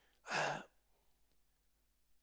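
A single audible breath into a handheld microphone, about half a second long, a quarter second in. The rest is near silence.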